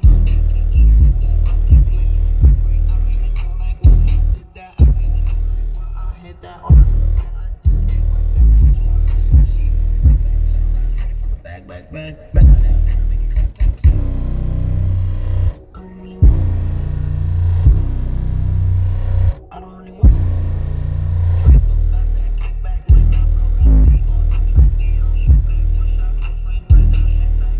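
American Bass XFL 12-inch subwoofer in a ported box tuned to 32 Hz, playing bass-heavy music with rapped vocals at high volume. Deep bass notes hit in a repeating pattern, with a few short drops in the track.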